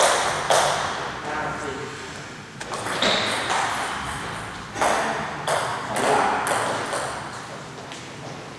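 Table tennis ball clicking off paddles, table and floor: about six sharp, irregularly spaced clicks, each ringing on in a large, echoing hall.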